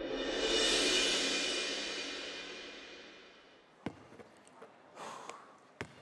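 A shimmering, cymbal-like production sound effect swells up, peaks about a second in and fades away over the next few seconds. A basketball then bounces on the court once about four seconds in and again near the end, as the shooter dribbles before a free throw.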